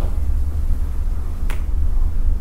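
A single sharp click about one and a half seconds in, from the presentation slide being advanced, over a steady low hum.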